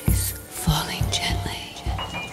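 Improvised acoustic music: a low hand drum, a conga or Native drum, struck in an uneven pattern about two or three times a second, under breathy, whispery sounds with gliding pitches higher up.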